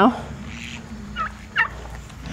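Young turkeys calling: two short, high chirps a little past a second in, over the quiet murmur of the flock.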